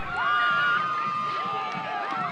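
Girls' voices cheering and screaming, one long high-pitched scream held for over a second above overlapping shouts and whoops.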